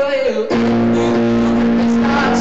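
Live music: an electric keyboard playing sustained chords. A wavering, held sung note ends about half a second in, and the keyboard chords carry on.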